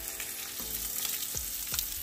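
Ribeye steak sizzling steadily as it sears in a dry nonstick pan, its fat rendering out in place of oil, with a few small pops.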